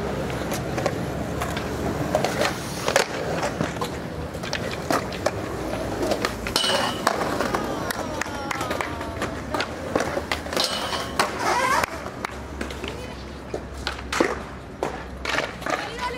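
Skateboard wheels rolling on concrete, with repeated sharp clacks of tail pops and landings and the scrape of trucks grinding metal in 50-50 grinds. Voices call out twice, about halfway through.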